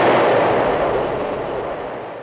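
An explosion dying away: a dense rush of noise that fades steadily.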